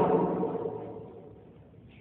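The echo of a man's amplified voice dying away in a reverberant hall, fading out over about a second and a half into faint room tone.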